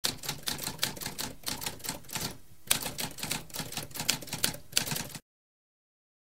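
Typewriter sound effect: rapid mechanical key strikes with a brief pause about halfway, stopping abruptly a little after five seconds.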